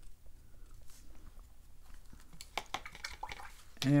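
Quiet watercolor painting sounds: a few light taps and soft clicks from a brush being dabbed on paper and a paper towel being handled, most of them about two and a half to three and a half seconds in.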